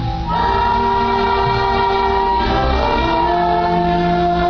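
Live orchestra playing long held chords, the chord changing about a quarter second in and again near three seconds.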